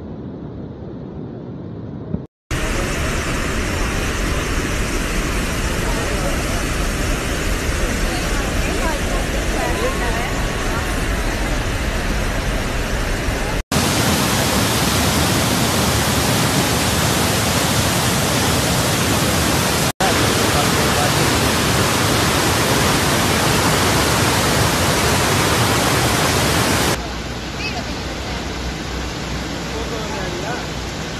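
Iguazu Falls pouring, a loud, steady rushing of water, heard in several clips joined by abrupt cuts where the level jumps, about 2, 14, 20 and 27 seconds in.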